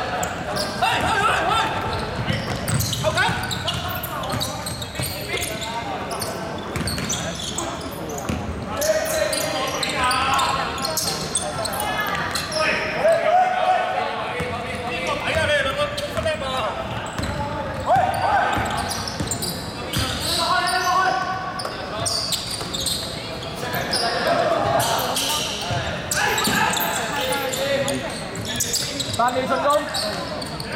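People calling out during an indoor basketball game, with a basketball bouncing on the wooden court, in a large, echoing sports hall.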